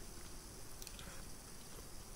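Faint, soft, wet chewing of a slice of cheese, with a few small clicks of the mouth.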